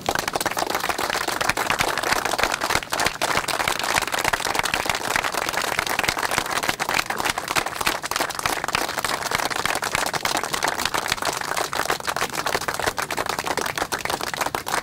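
A crowd applauding, many hands clapping steadily.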